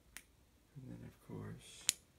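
A faint click, then two short low murmured vocal sounds, a brief hiss, and a sharp click near the end: the switch of the ultraviolet light being turned on.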